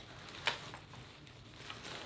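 A wooden electronic chessboard being slid into a padded fabric carrying bag: faint rustling of the fabric, with one light tap about half a second in.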